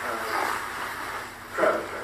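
Indistinct speech: a voice talking, too unclear to make out words, in a meeting room.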